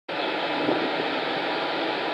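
Steady whirring hiss of a standing South West Trains Class 450 electric multiple unit's fans and auxiliary equipment running.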